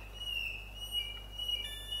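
Xiaomi countertop water purifier's electronic buzzer sounding a high, steady tone with a few short, slightly lower notes, in response to its select key being pressed during a filter reset.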